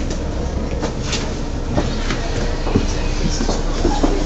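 Inside a double-decker bus: the diesel engine's steady low rumble, with scattered clicks and knocks from rattling fittings and handling.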